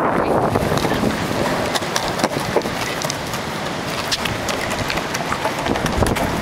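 Longboard wheels rolling on a concrete boardwalk: a steady rolling rumble with scattered light clicks, and wind on the microphone.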